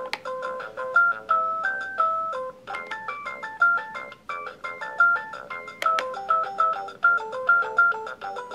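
Electronic toy tune from the Delta Children's Lil' Drive baby walker's activity console, set off by pressing one of its buttons: a simple beeping melody of short stepped notes, several a second.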